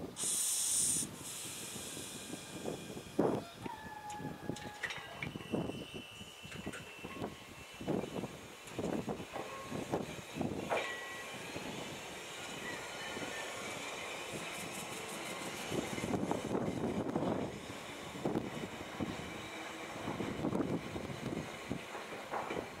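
Choshi Electric Railway 2000-series electric car pulling out of a station: a loud hiss of air released in the first second, then thin whining tones and irregular knocks of wheels and running gear as it moves off.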